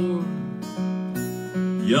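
Steel-string acoustic guitar strumming a slow chord accompaniment, several strokes ringing on between sung lines. A singing voice comes back in right at the end.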